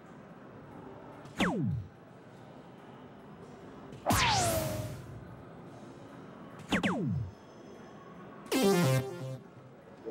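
Electronic soft-tip dartboard machine playing its synthesized sound effects as darts land: a falling tone about a second and a half in, a louder sweeping effect about four seconds in, and another falling tone near seven seconds. A longer electronic jingle near the end marks the end of the three-dart turn.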